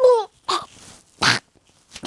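A boy's exaggerated choking noises: a short cry falling in pitch, then two sharp coughing bursts.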